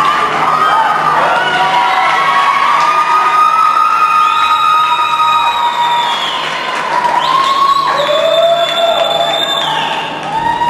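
Audience cheering and whooping, with many long high shrieks rising and falling over the crowd noise.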